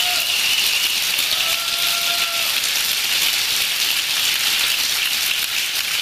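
Audience applauding steadily, a dense even clapping, with a single held call from someone in the crowd about a second and a half in.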